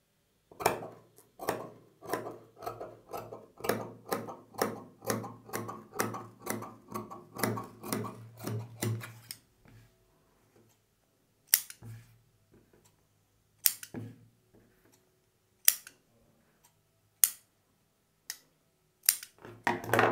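Tailor's scissors cutting cotton blouse fabric: a steady run of snips, about three a second, for roughly nine seconds. They stop, and a few separate clicks and taps follow.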